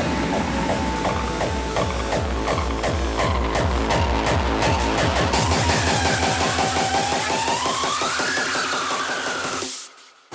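Electronic dance music with a fast, steady beat; in the second half a synth line glides down and back up, and the track cuts out briefly just before the end.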